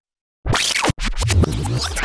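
Silence, then about half a second in a DJ-style record-scratch rewind effect with fast sweeping pitch glides. It breaks off for an instant near the middle and picks up again.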